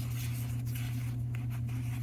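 MetaZoo trading cards sliding across one another in the hand as a pack is flipped through: faint, scattered scrapes of card on card over a steady low hum.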